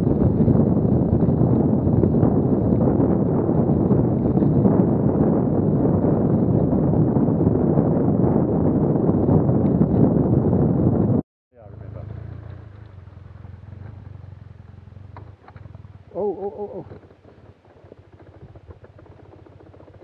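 BMW HP2 Enduro's boxer-twin engine running under way on a rough rocky trail, with heavy wind buffeting on the camera microphone. The sound stops abruptly about 11 s in, and a much quieter, low hum follows, with a short shout about 16 s in.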